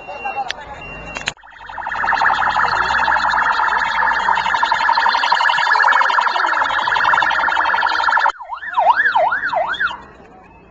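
Emergency vehicle's electronic siren, loud: starting about a second in, a rapid pulsing tone holds for about seven seconds, then switches to a fast up-and-down yelp near the end.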